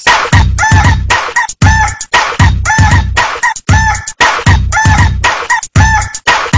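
Electronic dance remix built on a sampled chicken clucking and crowing, the calls repeating over a steady heavy beat of about two hits a second.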